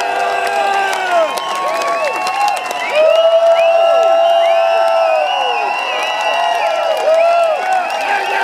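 Concert crowd cheering: many voices whooping and shouting over one another, with some clapping. One long whoop is the loudest sound, a few seconds in.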